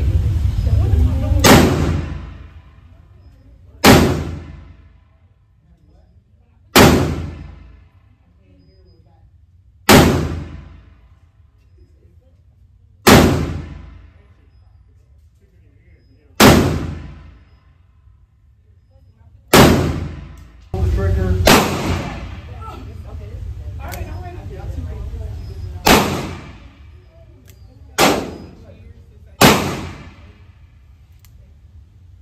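Revolver shots in an indoor range: about eleven single reports, each with a short ringing echo off the walls. The first six come roughly three seconds apart; the later ones come closer together.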